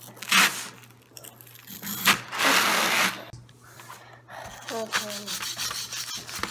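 Small plastic digging tool scraping at a hard plaster excavation-kit block in short strokes. The longest and loudest scrape runs for about a second from about two seconds in.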